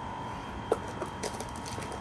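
Packaging being handled: a few short crackles and clicks, the sharpest about two-thirds of a second in, typical of plastic wrap and a cardboard box under the hands, over a steady faint tone.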